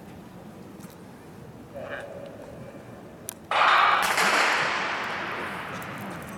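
A track starting pistol fires about three and a half seconds in to start a 4x100 m relay: a sharp crack, then a loud rush of noise that fades over about two seconds. A short call, likely the starter's command, comes about two seconds in.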